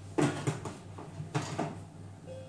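Plastic lid being fitted onto the steel mixing bowl of a Silvercrest Monsieur Cuisine Connect food processor: a sharp knock just after the start and another clack about a second later, over a faint steady hum.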